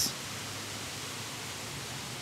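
Steady hiss of background noise, even and featureless, with no distinct event.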